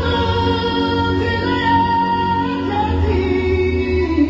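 Gospel music: a sung melody holds a long note for about two and a half seconds, then glides down, over steady instrumental backing.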